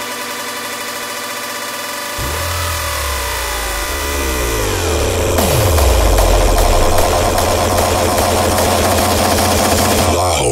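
Hardstyle dance music from a DJ mix. A held synth chord is joined about two seconds in by a deep bass and a cluster of synth tones sliding down in pitch. By the middle it settles into a loud, dense, low buzzing drone.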